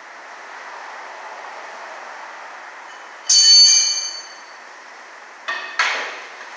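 A metal tool strikes metal under the van with a loud clang that rings out for about a second, then two sharper metallic knocks follow near the end, over a steady shop hiss.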